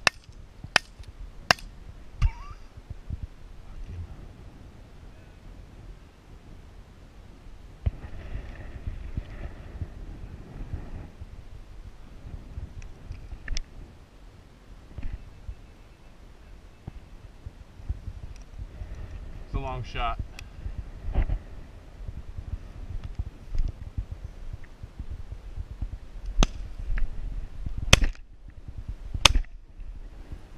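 Shotgun shots: two sharp cracks about a second apart at the start and two more near the end, over wind buffeting the microphone and the rustle of walking through dry prairie grass.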